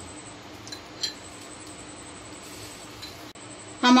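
A metal spoon clinking lightly twice, about a second in, while oil is spooned into a non-stick frying pan, over a steady faint hiss.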